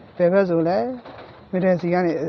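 A person's voice making two drawn-out sounds with sliding pitch, the first lasting most of a second and the second beginning about one and a half seconds in. No keyboard notes sound.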